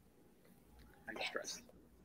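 Quiet room tone, then about a second in a brief, soft whispered voice sound lasting about half a second.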